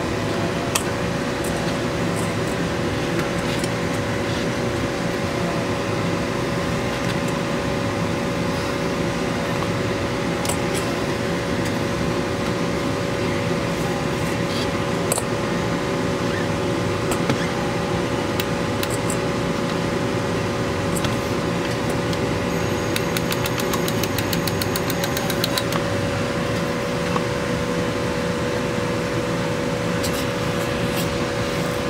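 A 600 RPM cordless drill runs steadily at constant speed with a steady motor whine. It is spinning a CB radio's channel-selector shaft continuously to wear-test the rotary encoder.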